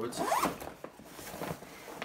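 Zipper of a Wilson tennis bag being pulled along by hand: a quick, louder rasp at first, then a softer, longer run of the zip.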